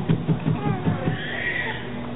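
A person laughing: a quick run of about six short 'ha' sounds in the first second, then a brief higher sound in the second half.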